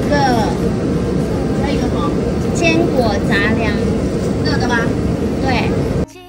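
Steady roar of busy street traffic, heaviest in the low end, with a faint steady hum over it. Short snatches of conversation break in above the roar.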